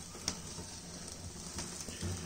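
Low background hiss with a steady faint hum and a few light clicks, the clearest about a quarter of a second in.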